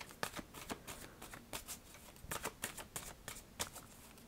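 A deck of tarot cards being shuffled by hand: a quiet, irregular run of card flicks and taps.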